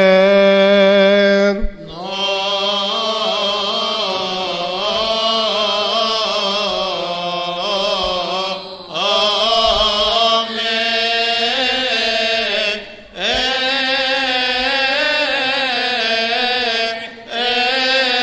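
A male voice chanting a melismatic Coptic liturgical hymn, with long held and ornamented notes sung in long phrases and short breath pauses between them.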